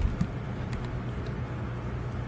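A steady low hum of background noise, with a faint click just after the start.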